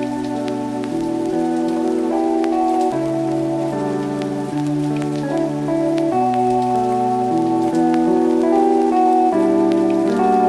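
Soft background music of sustained keyboard chords that change every second or so, over the steady sound of falling rain with scattered sharp drop ticks.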